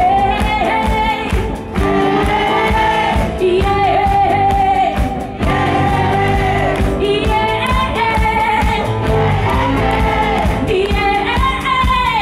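Live pop band performance: a woman sings the lead vocal in phrases with long held notes over drums and guitars.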